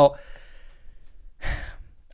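A man's sigh: a short, breathy exhale about a second and a half in, after the tail of a spoken word.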